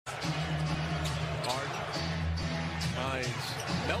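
A basketball being dribbled on a hardwood arena court, with repeated bounces, over arena crowd voices and music.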